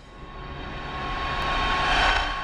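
Intro sound effect: a rumbling, jet-like whoosh that swells steadily in loudness, peaking near the end.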